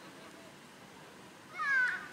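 Low open-air ambience, then about one and a half seconds in a single short, high-pitched shout from a young player.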